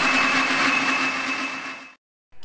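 Electric mixer grinder running at full speed with its lid held down, a steady whirring motor whine, dropping away just before the end.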